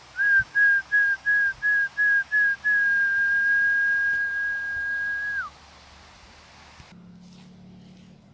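A whistle on one steady pitch: eight short, quick pips, then one long held note of about three seconds that drops in pitch as it ends.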